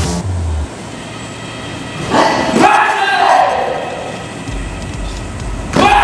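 Two loud yells (kihap) from taekwondo fighters sparring. Each starts sharply. The first comes about two seconds in and is drawn out, falling in pitch. The second is shorter and comes near the end.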